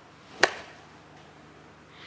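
A single sharp tap about half a second in, over faint room tone.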